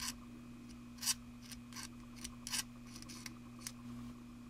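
Hand tool working a small plastic model part, the fan belt and pulleys of a 1/25 scale engine: short, irregular scrapes and clicks, the sharpest about a second in.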